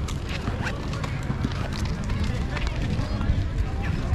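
Footsteps on a paved path with voices of passers-by in the background, over a steady low rumble of wind on the microphone.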